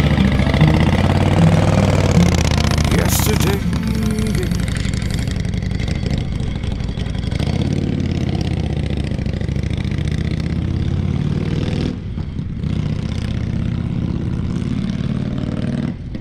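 Vintage Harley-Davidson chopper's V-twin engine running, revved over the first few seconds and then settling into a steadier, quieter run, with people talking over it.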